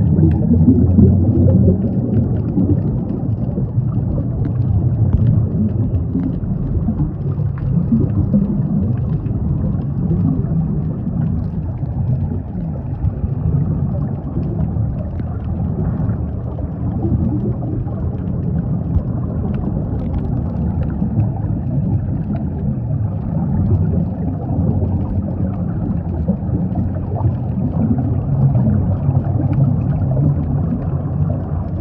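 Muffled underwater ambience picked up by a camera below the surface: a steady low rumble with faint scattered clicks and the bubbling of scuba divers' exhaled air.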